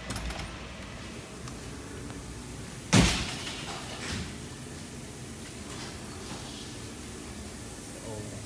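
A single loud bang about three seconds in, fading over about a second, followed by a couple of fainter knocks, over a steady low background hum.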